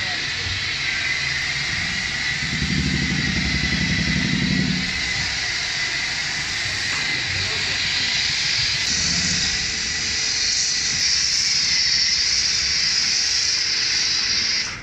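Pressure washer with a foam cannon spraying snow foam onto a car: a steady hiss that grows stronger in the second half, with a low rumble for a couple of seconds about three seconds in.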